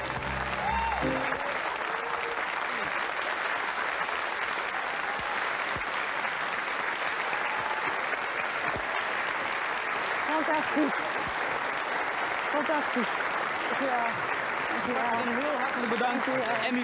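Studio audience applauding steadily after a guitar-and-violin ensemble finishes; the last notes of the music fade out about a second in, and a few voices call out over the clapping near the end.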